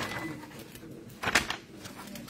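Sheets of stamp paper being flipped and handled on a glass tabletop: a short rustle at the start and a louder rustle about a second and a half in.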